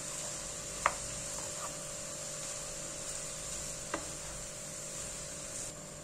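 Wooden spoon slowly stirring shredded cabbage in a frying pan over a soft, steady sizzle of sautéing. The spoon knocks lightly against the pan twice, about a second in and near four seconds.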